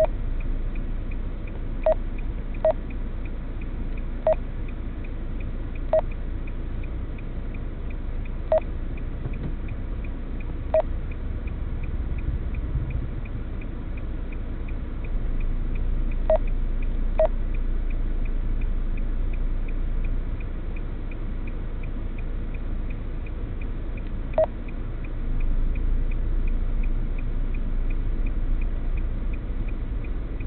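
Low steady rumble of a car idling while stopped at a traffic light, heard inside the cabin. A faint fast even ticking runs through it, with a few sharper single clicks at irregular moments.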